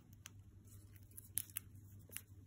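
A cockatiel's beak nibbling and crunching popcorn held between a person's lips: a string of faint, sharp, crisp clicks, the strongest a little past halfway.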